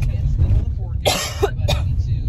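A woman's cough about a second in, with a smaller one just after, over the steady low road rumble inside a moving car.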